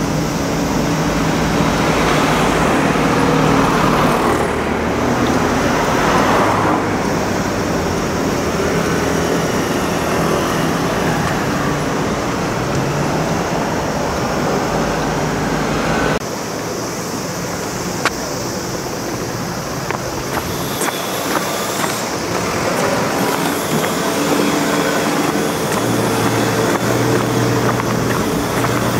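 Road traffic: cars, a van and a motor scooter passing close by, engines running over steady tyre and road noise, with louder passes in the first few seconds. About 16 seconds in the sound changes abruptly to a quieter traffic background, with a steady low engine hum near the end.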